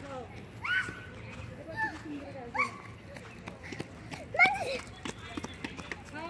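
Young children's voices: short, high calls and shouts, about four of them, the loudest about four and a half seconds in, with no clear words.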